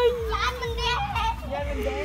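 Excited children's voices and laughter, with unclear chatter and one drawn-out exclaimed sound in the first half.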